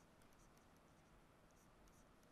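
Near silence, with faint light taps and scratches of a stylus writing on a tablet.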